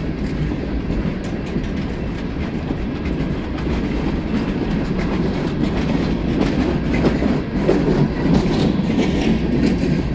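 Freight cars of a passing train, tank cars then open-top gondolas, rolling by close at steady speed: a continuous rumble of steel wheels on rail with light clicking over the rail joints. It grows a little louder in the second half.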